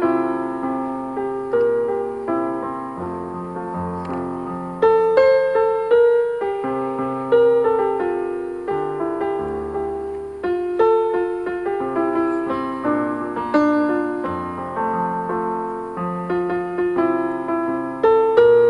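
Electronic keyboard playing chords under a melody line, each note struck and then fading away.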